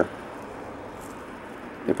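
Steady low background hiss of room tone, with no distinct events.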